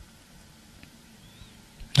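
A quiet lull: only faint low background noise from the film soundtrack, with a single faint tick partway through. A man's voice starts at the very end.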